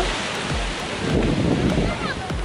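Small waves breaking and washing up the sand, with wind buffeting the microphone. Background music with a steady low beat runs underneath.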